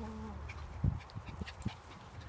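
Pomeranians playing on a lawn: a few short, dull thumps and scuffles, the strongest about a second in.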